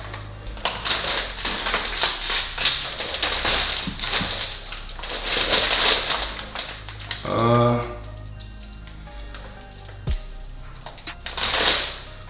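Crumpled brown kraft packing paper rustling and crackling as hands dig through a cardboard parts box. The rustling is busy for the first seven seconds and picks up again near the end, with a brief hum about midway.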